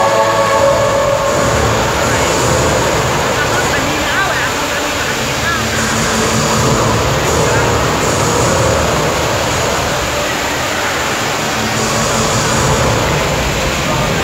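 Large indoor fountain's water jets and cascades rushing steadily.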